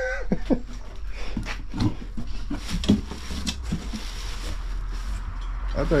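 Cardboard box and plastic packing rustling and crinkling, with scattered light clicks and knocks, as a new wheel is unpacked from its box.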